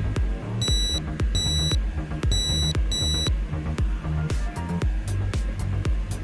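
Digital multimeter's continuity buzzer giving four short high beeps in two pairs as the probes touch the module's ground wires, signalling continuity: the ground connections are good. A steady background music beat runs underneath.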